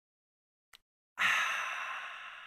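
A man's long, breathy exhale, a satisfied "ahh" after a sip from a mug, starting about a second in and fading away. A faint click comes just before it.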